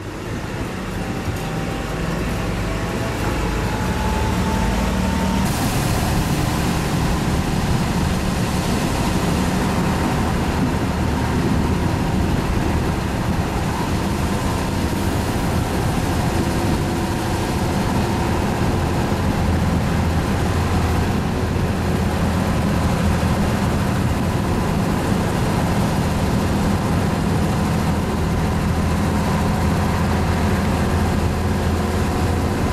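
Class 798 Uerdingen railbus with its underfloor Büssing diesel engine running. It grows louder over the first few seconds with a faint rising whine, then settles into a steady loud drone with a hiss added about five seconds in.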